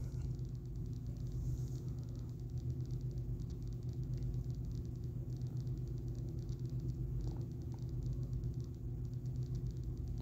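Steady low hum with a fast, even flutter; no distinct handling sounds stand out.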